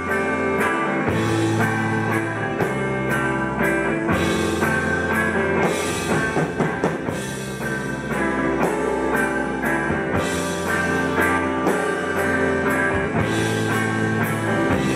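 Rock band playing live without vocals: electric guitars holding sustained notes over a steady drum-kit beat.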